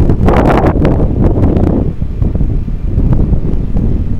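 Wind buffeting the microphone of a camera on a moving bicycle: a steady, loud low rumble, with a rougher, louder stretch in the first two seconds.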